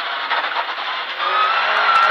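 Rally car at speed on a gravel road, heard inside the cabin: a dense, steady rush of engine, tyre and gravel noise. About a second in, a high whine starts and climbs slowly in pitch as the car accelerates.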